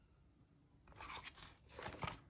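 Paper pages of a hardback journal being turned by hand: two faint, brief rustles, about a second in and near the end.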